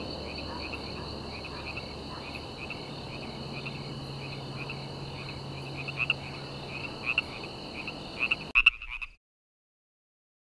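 A chorus of calling frogs: a steady high trill with short, louder chirps repeating through it, the loudest near the end. It cuts off suddenly about nine seconds in.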